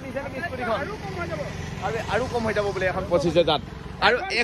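People talking in conversation over a low, steady hum of road traffic.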